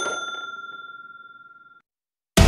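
A single bell-like ding sound effect: one metallic strike with a clear high ring that fades over nearly two seconds and then cuts off abruptly. It is the chime of a notification bell in a subscribe-button animation.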